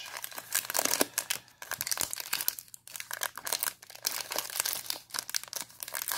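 Foil wrapper of an O-Pee-Chee Platinum hockey card pack crinkling in the hands as it is handled and opened, an irregular crackling rustle with a couple of brief lulls.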